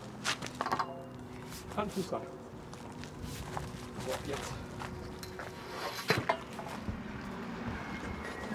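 Irregular knocks and clanks from a metal flagpole being handled and set upright in a garden bed, the loudest pair about six seconds in, with faint voices underneath.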